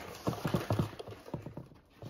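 Handling noise from cardboard boxes of wooden nutcrackers: a string of light, irregular knocks and taps that fades out near the end.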